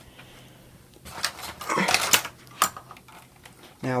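Plastic Lego bricks clattering and rattling in a burst of sharp clicks for about a second and a half, starting about a second in, as pieces of a Lego Hogwarts castle model are knocked loose while a Lego Saturn V rocket section is pulled out of it.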